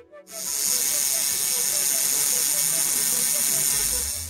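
Intro sound effect over a logo card: a steady hiss with a quick, ratchet-like ticking, starting just after the beginning.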